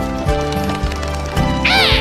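Cartoon background music with a steady beat. Near the end comes a high cartoon animal cry, a sound effect that rises and then falls in pitch.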